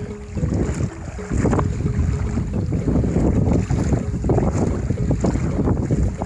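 Wind buffeting a smartphone's microphone: a steady low rumble with irregular crackle.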